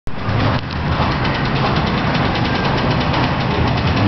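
Steady, loud machine noise: an engine-like rumble with a low hum and hiss that holds even throughout.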